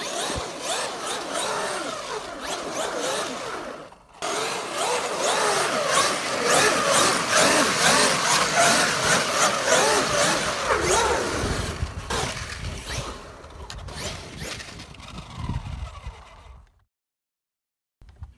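Traxxas X-Maxx 8S RC monster truck's 1200 kV Velineon brushless motor and drivetrain whining, swooping up and down in pitch with the throttle as the truck drifts on ice. The sound drops out briefly about four seconds in. It fades over the last few seconds and cuts to silence near the end.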